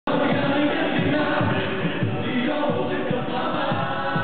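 Male vocal ensemble singing together into microphones, amplified through PA loudspeakers.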